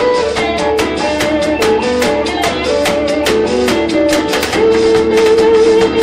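Live blues band playing an instrumental break, with electric guitar and saxophone over drums and a steady beat. A long note is held from about four and a half seconds in.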